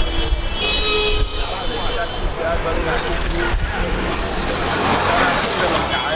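A man talking in the street over steady road traffic, with vehicle engines running behind him.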